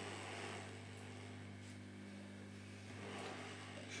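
Hot air rework station blowing on a phone circuit board to heat a soldered shield can: a faint, steady hiss of air over a low electrical hum, growing slightly louder near the end.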